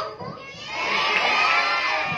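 A crowd of schoolchildren shouting a line together in unison, loud and sustained, starting about half a second in and lasting about a second and a half.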